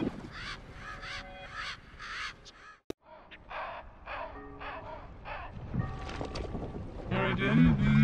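A rapid series of short, harsh cartoon bird cries over background score, broken by a sharp click and a brief cut-out of the sound about three seconds in; a voice comes back near the end.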